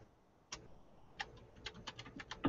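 Faint computer keyboard clicks: a single key about half a second in, another just past a second, then a quicker run of four or five keys near the end.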